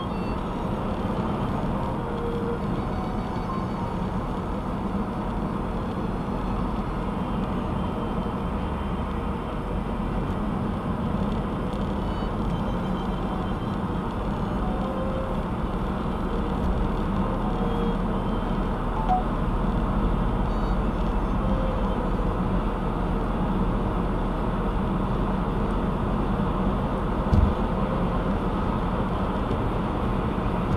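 Steady road noise inside a car's cabin at highway speed: tyre and engine rumble that grows heavier about halfway through, with one brief thump near the end.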